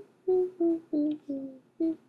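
A person humming a simple tune in short, separate notes, five of them, stepping down in pitch and rising again on the last.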